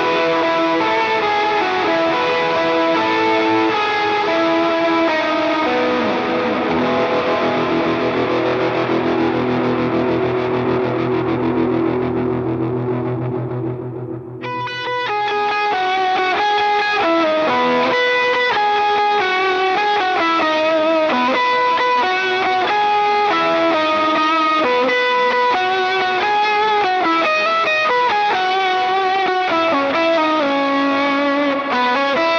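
Gretsch electric guitar played through an effects rig. A slow, sustained passage of held notes rings out and fades away about halfway through. After a brief dip, a picked single-note melody follows with a POG-style octave effect that doubles each note.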